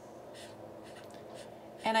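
Felt-tip marker writing on chart paper: a series of short, faint scratchy strokes as numbers are written.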